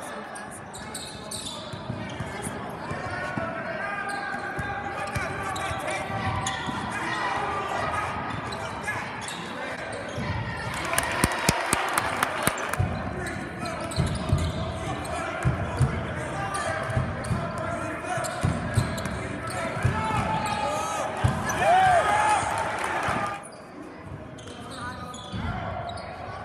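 Basketball game sound in a reverberant gym: a ball dribbled on the hardwood court in repeated thuds, under steady crowd and player chatter. About eleven seconds in there is a short burst of sharp clapping, and there is a brief sneaker squeak near the end.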